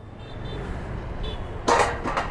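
Yamaha NMAX 155 scooter's single-cylinder engine running low and steady as the scooter rolls off, slowly getting louder. A sudden loud rush of noise comes near the end.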